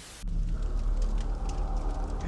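TV-static hiss that cuts off abruptly a moment in, followed by a steady low rumble of outdoor ambience with a few faint clicks.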